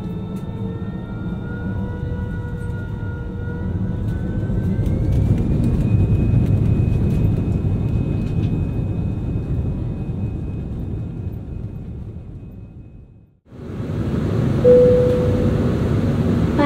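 Airbus A320 jet engines heard through the cabin: a steady rumble with a whine that rises in pitch and grows louder about five seconds in as the engines spool up. Near the end the sound cuts off abruptly, and a single cabin chime sounds over the cabin hum.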